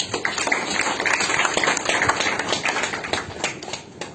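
Audience applauding: many hands clapping at once, dying away near the end.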